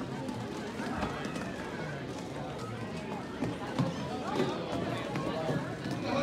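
Roller rink din: indistinct children's voices and chatter over the rolling of roller skates on a wooden floor, with a few light knocks.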